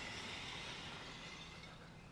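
Faint steady outdoor background noise, a low hiss with a thin high steady tone through it, fading slightly towards the end.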